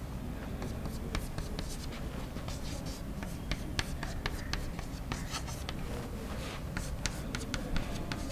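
Chalk writing on a blackboard: a quick, irregular run of sharp taps and short scrapes as symbols are written, over a steady low room hum.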